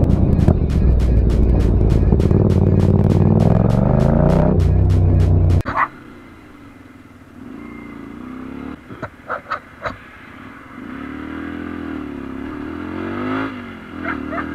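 Motorcycle engine accelerating with its pitch rising, mixed with loud music with a fast beat, cut off suddenly about five and a half seconds in. Then a second motorcycle's engine running quieter, with a few sharp clicks in the middle, before it revs up and down.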